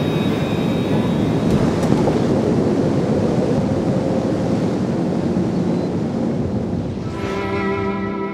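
Dark intro sound design: a dense, steady rumbling noise bed like distant thunder, with a brief rising whoosh near the end.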